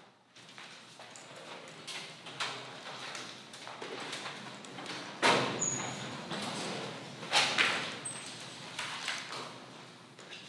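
A classroom emptying: irregular footsteps, knocks of chairs and desks, and rustling of papers and bags as students get up. Two louder knocks come about five and seven and a half seconds in, with a couple of brief high squeaks.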